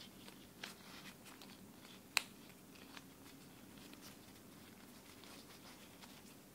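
Wooden blocks of a snake cube puzzle clicking and knocking together as latex-gloved hands twist them, over a soft rustle of the gloves. One sharp click a little past two seconds in is the loudest; the rest are faint scattered ticks.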